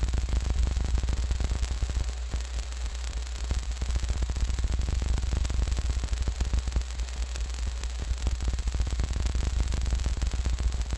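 Electronically generated sound from a sound-art installation in a row of lockers, its texture derived from the locker owners' fingerprint data: a steady low hum under dense crackling noise.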